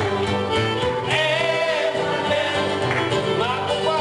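Cajun band playing live: fiddle with sliding, wavering notes over button accordion and strummed acoustic guitar.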